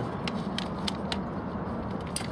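A few light metallic clicks and clinks from handling metal kitchen strainers, over a steady low background rumble.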